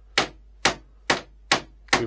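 Hammer striking a nail into a tongue-and-groove wood board, five evenly spaced blows at about two a second.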